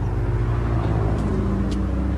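A motor vehicle's engine running steadily nearby, a low, even hum with a faint, slowly shifting pitch.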